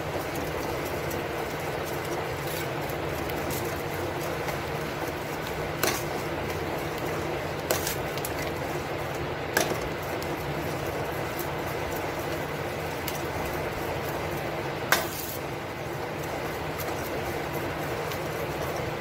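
Butter melting and foaming in a hot stainless-steel kadhai, a steady bubbling hiss, the first stage of cooking it down into ghee. A steel spoon stirs it, clinking against the pan four times, loudest near the end.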